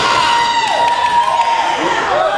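A long, held shout from a single voice, dipping in pitch partway and breaking off near the end, over crowd noise in the hall.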